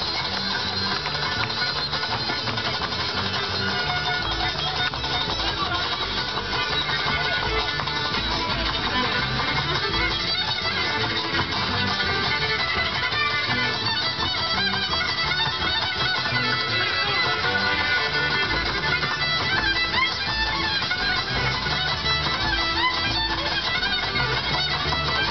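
Live bluegrass string band playing an instrumental passage without vocals: the fiddle is prominent over banjo, guitar and upright bass keeping a steady beat.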